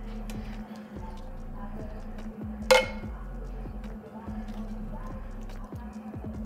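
Metal utensil clinking against cookware while food is dished from a skillet: soft scattered taps and one sharp, ringing clink a little before the middle.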